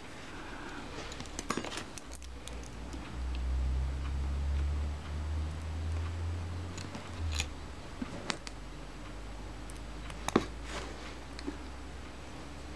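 Small metal hand tools, tweezers and a fine screwdriver, clicking and scraping against a camera body as the leatherette covering is pried up and peeled back. The clicks are scattered, with a sharp one about ten seconds in. A low rumble runs underneath from about two to seven seconds in.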